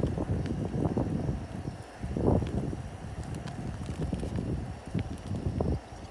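Irregular low rumble of wind buffeting the microphone, swelling about two seconds in and again near the end. Under it is the soft squelch of thick, jelly-like ramen soup concentrate being squeezed from a pouch into a stainless steel pot.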